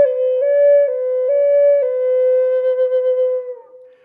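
Native American flute playing a slow trill: one finger lifts and drops so the tone alternates between two neighbouring notes about twice a second. The flute then settles on a held lower note that fades out near the end.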